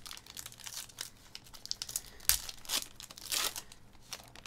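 A foil trading-card pack being torn open and crinkled by hand: a run of sharp crackles, with the loudest snap a little past halfway.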